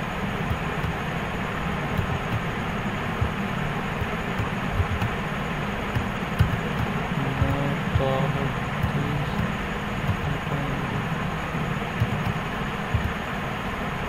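Steady rumbling background noise with a low hum, and a few faint clicks now and then.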